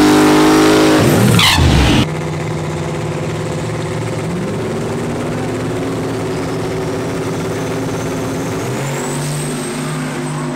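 Single-turbo LS V8 Camaro doing a burnout at high revs. About two seconds in the sound drops sharply to the engine running at low revs as the car rolls forward, with a faint rising high whine near the end.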